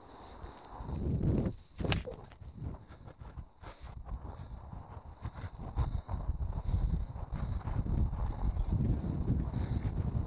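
A golf iron strikes a ball out of long dune grass with one sharp crack about two seconds in. Wind buffets the microphone throughout as a steady low rumble.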